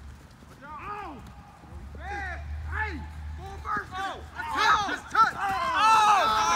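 Several men's voices shouting and calling out across an open field during a football play, the short arching yells growing more frequent and louder toward the end.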